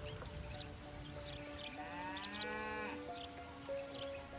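A cow mooing once, a single call of about a second in the middle, rising and then falling in pitch, over soft background music with long held notes.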